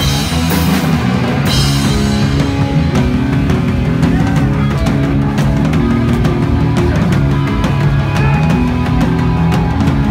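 Hardcore punk band playing live: distorted electric guitars and bass chugging through chord changes over driving drums and cymbal crashes.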